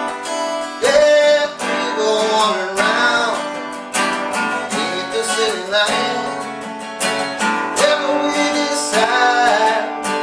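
Cutaway acoustic guitar strummed in a steady rhythm, with a man's voice singing over it at times in long, bending notes.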